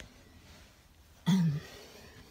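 A person clears their throat once, briefly, about a second and a half in.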